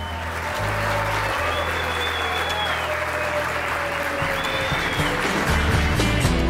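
Wedding guests applauding, a dense steady clapping, over background music with held low notes.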